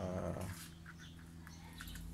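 A short vocal sound lasting about half a second at the start, over a faint steady low hum.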